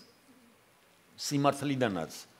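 A brief pause of near silence, then a man's voice starts speaking a little over a second in.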